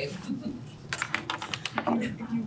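Computer keyboard typing: a quick run of key clicks about a second in, with faint talk in the background.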